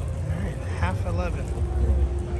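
Outdoor crowd background: people talking a short way off over a steady low rumble, with a faint steady hum starting past halfway.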